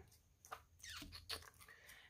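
Faint small clicks and rustles of fingers peeling adhesive enamel dots off their backing sheet and pressing them onto paper, a few separate ticks over a low steady hum.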